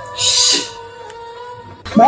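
A short hissing sound effect, about half a second long, near the start, over a faint steady hum of tones.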